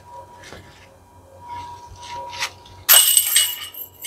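A putted disc golf disc hits the chains of a metal disc golf basket about three seconds in. The chains jingle and ring loudly for about a second: the putt is made.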